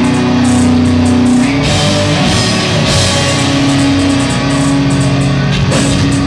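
Metalcore band playing live: distorted electric guitars hold low chords over fast drumming, the chord changing about a second and a half in.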